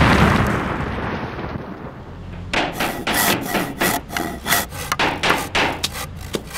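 A fading rumble over the first two seconds, then a run of sharp knocks, two or three a second: hammering on wood.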